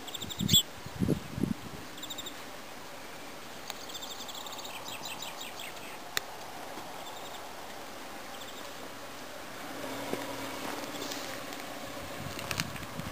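Outdoor ambience with faint, high bird chirps, a few low thumps in the first second and a half, and a single sharp click about halfway through.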